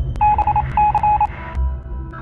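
Electronic beeps like telephone keypad tones, in two quick runs of short beeps at one pitch, over a hiss that cuts off about a second and a half in, with a low bass pulse from the outro music underneath.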